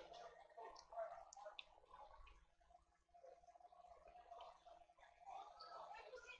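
Near silence: quiet workbench room tone with a few faint small clicks.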